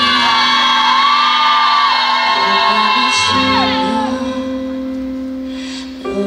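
Opening of a slow pop ballad sung live by a female vocalist: a high held vocal line that bends in pitch over soft sustained chords, easing off over the last couple of seconds.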